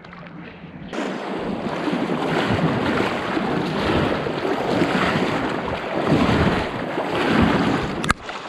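Fast-flowing river water rushing and splashing close to the microphone, with wind buffeting it. It starts suddenly about a second in, after a quieter moment.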